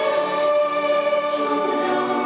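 Choir singing a slow hymn in long held notes over orchestral accompaniment, accompanying a liturgical flower-offering dance.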